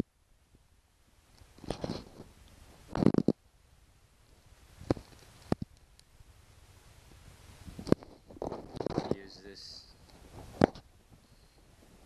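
Scattered clicks and knocks at irregular times as the plastic leaf blower housing and small tools are handled, with a longer cluster of rustling and knocking about eight to nine seconds in.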